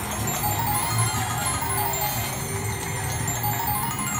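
Price is Right Showcase Showdown slot machine playing its win music, with bell-like chimes over a steady low beat, while the win meter counts up the bonus award.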